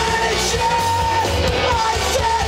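Live rock band playing at full volume: electric guitars, bass and drums, with a sung lead vocal over them.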